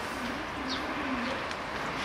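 A bird's low, wavering cooing call, in two parts in the first half, with a brief high chirp in the middle, over a steady background hiss.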